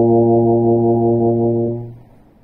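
Bass trombone holding one long, steady low note, which fades away near the end.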